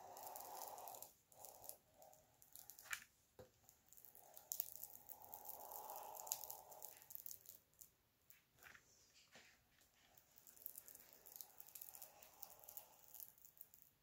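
Faint scrape and rustle of a small plastic scraper smoothing freshly glued paper flat, in three slow stretches of strokes with a few light clicks between them.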